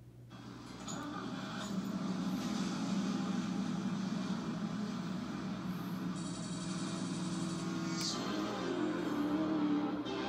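Intro of a hip-hop music video's soundtrack: a steady low vehicle rumble over an ambient music bed, swelling in over the first couple of seconds.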